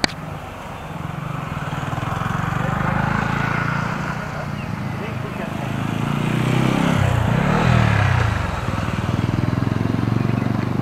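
Road vehicle engines running close by: a low engine drone that swells, with its pitch sliding down and back up between about six and nine seconds in as a vehicle moves past.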